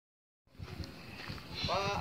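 Open-air background noise, then about a second and a half in a man starts calling out in a drawn-out voice.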